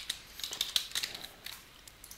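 A few quiet computer keyboard keystrokes, short clicks that thin out after about a second and a half as a file name is typed.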